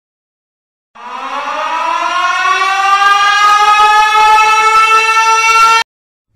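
Air-raid siren winding up, starting about a second in, its pitch rising and then levelling off, and cut off abruptly near the end.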